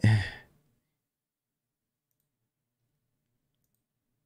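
A man's voice trailing off in an exhaled, frustrated sigh in the first half second, then silence.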